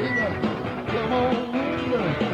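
Live rock band playing, with melody lines bending up and down in pitch over a steady bass, heard as FM radio broadcast audio.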